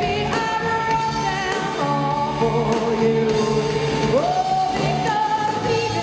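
Live rock band: a woman sings long held notes with vibrato, sliding up to a higher note about four seconds in, over electric guitars and drums with steady cymbal strokes.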